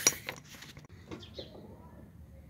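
A few hard metallic clinks and knocks from handling a fan clutch and its bolts on concrete: a cluster right at the start, then two fainter clinks just over a second in.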